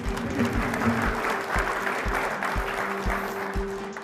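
Audience applauding steadily, over background music with a steady low beat.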